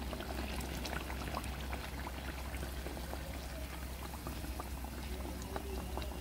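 Battered banana fritters deep-frying in hot oil: a steady sizzle with many small crackles. The fritters have turned golden and are done frying.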